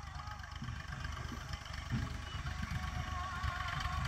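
Tractor's diesel engine running steadily at low speed as it creeps along pulling a loaded manure trolley, a low even rumble.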